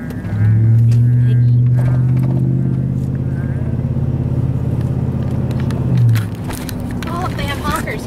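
Vehicle engine and exhaust droning inside the cabin: a strong, steady low hum that sets in suddenly, holds an even pitch for about six seconds, then bends up briefly and drops away.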